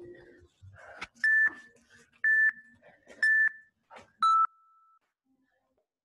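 Interval workout timer counting down: three short beeps about a second apart, then a fourth, lower and longer beep that signals the start of the next work interval.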